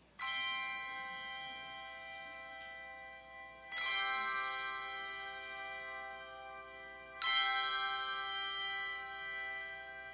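Handbell choir ringing three full chords, about three and a half seconds apart; each chord rings on and slowly fades before the next is struck.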